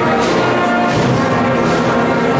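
Live band music with brass playing held chords, heard in a large hall.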